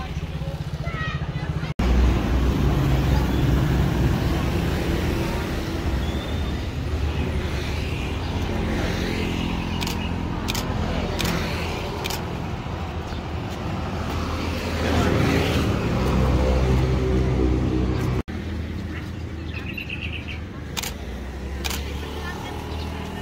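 Motor scooters and other road traffic passing close by, engine notes rising and falling as vehicles go past.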